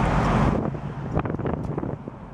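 Wind buffeting the microphone in a moving 1968 Chevrolet Camaro Rally Sport, over a low rumble of road and engine. The buffeting eases about half a second in, and a few short knocks follow.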